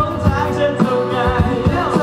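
Live pop-rock band performance: a male lead vocalist sings a melodic line with sliding pitch over electric guitar, bass and drums, amplified through a PA.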